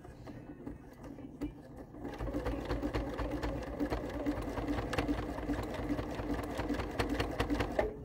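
Domestic sewing machine stitching a twin-needle zigzag through two layers of woven fabric and batting. It starts about two seconds in, runs steadily with a rapid, even stitch rhythm, and stops just before the end.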